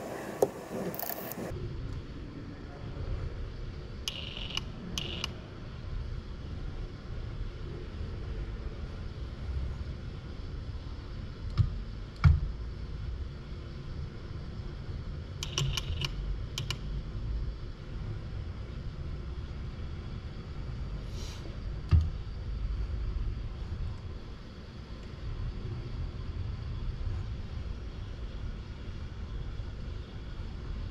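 Steady low hum with a few short, sharp metallic clicks and clinks as a robot gripper handles M6 bolts: a pair early on, a single click near the middle, then a quick cluster as the gripper works at the bolt rack, and one more click later on.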